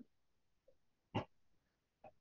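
Near silence with a single short breath sound from a man, a brief snort-like exhale, about a second in.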